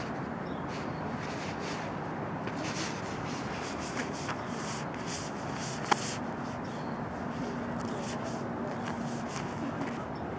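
Distant jet engine noise from a Boeing 737 MAX 8's CFM LEAP-1B engines at takeoff power on its takeoff roll, heard as a steady rushing sound. A single sharp click comes about six seconds in.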